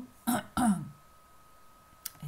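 A woman clearing her throat in two short, rough bursts within the first second.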